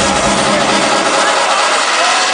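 Loud live trance music through a concert PA. The thumping kick drum drops out about a third of a second in, leaving sustained synth notes with no beat.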